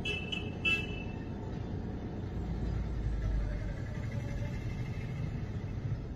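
City street traffic heard from inside a car: a steady low engine and road rumble that swells deeper around the middle, with a few short vehicle horn toots in the first second.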